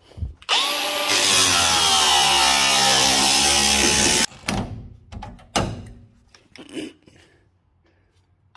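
A small angle grinder with a cutting disc spins up and cuts through a van's sliding-door handle, its pitch dropping slowly under load before it cuts off sharply about 4 s in. A few knocks follow as the cut-off handle is worked free.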